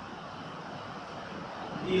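Steady room noise, an even hum and hiss with no distinct events; a man's voice starts right at the end.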